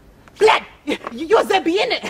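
A man's voice starting about half a second in, sounding in short bursts that swing widely up and down in pitch; it is not picked up as words.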